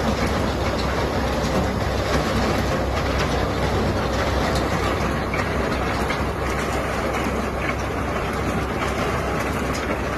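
Concrete batching plant running on a test run: its mixer and machinery give a loud, steady mechanical noise with a dense rattle, while the truck mixer waits under the discharge outlet.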